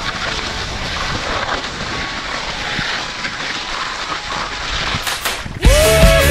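Wind rushing over an action camera's microphone with skis sliding on snow during a tandem paraglider's take-off run. Near the end, loud rock music cuts in suddenly.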